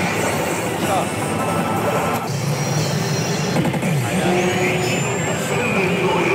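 Pachislot hall din: the steady roar of many slot machines' music and sound effects. Over it, a Basilisk Kizuna pachislot machine plays its own effect sounds and voice lines, with a high rising whistle about four seconds in.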